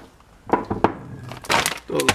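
Two sharp knocks about a third of a second apart, then a brief rustling burst: things being handled and set down on a kitchen counter.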